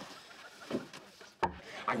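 Quiet room noise broken by a short sharp knock about one and a half seconds in, just before a man starts speaking.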